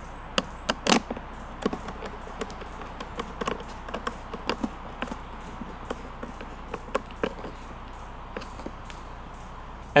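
Plastic front cover of a Honda EU2200i generator being fitted and its screw turned in with a hand screwdriver: irregular light clicks and taps, a few a second.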